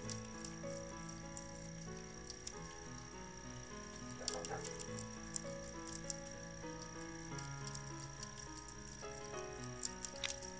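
Soft background music of sustained notes over faint, irregular crackling clicks: Asian swallowtail caterpillars chewing through a citrus leaf.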